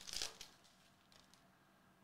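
Wrapper of a trading card pack crinkling as it is pulled open, a brief rustle in the first half second.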